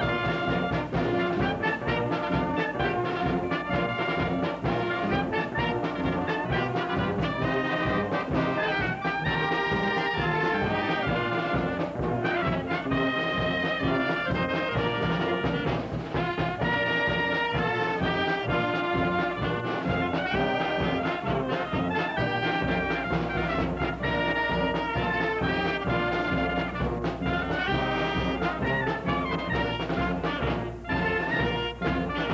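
A brass and wind band playing a tune with a steady beat: trumpets and saxophones over sousaphone bass, with clarinets and French horns, and a bass drum marking time.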